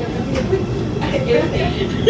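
Metro train running, heard from inside the passenger car: a steady running noise, with passengers' voices over it.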